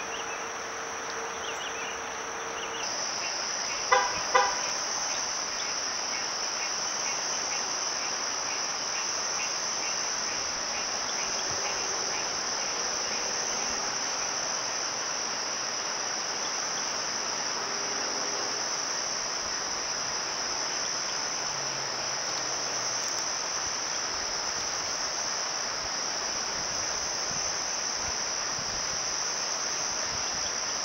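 Steady, high-pitched trilling of insects, cricket-like, that grows louder about three seconds in. Two sharp, short sounds stand out just after that.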